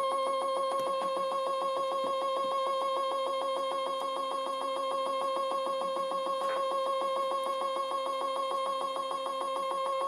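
Stepper-motor drive of a DIY universal test machine whining at one fixed pitch with a fast even pulsing while it slowly pulls a brass threaded insert out of a printed sample.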